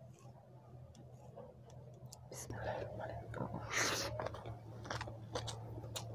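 Close-miked eating sounds: bare fingers squishing and mixing cooked rice and mashed potato on a plate. The sounds are faint at first and grow louder from about two seconds in, with wet mouth clicks and a breathy burst near the middle.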